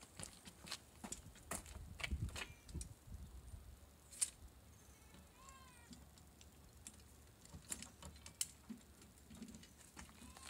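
Faint, scattered clicks and knocks of a black boot luggage rack being set on a car's boot lid and its clamps fastened by hand, with one sharp click about four seconds in.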